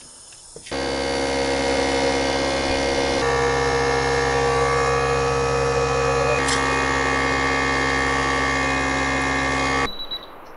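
Air compressor running steadily, a constant humming drone that starts abruptly about a second in and cuts off just before the end, pumping air through a hose into a radiant-floor manifold to pressure-test the tubing.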